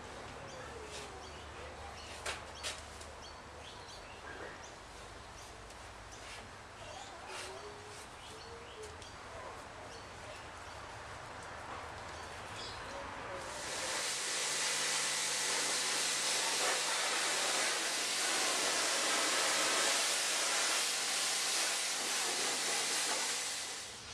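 A paintbrush dabbing paint stripper onto the sheet-steel underside of a car decklid, with a few faint taps. About halfway through, a loud, steady hiss starts suddenly and runs for about ten seconds.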